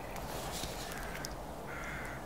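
A single short bird call near the end, over faint steady outdoor background noise.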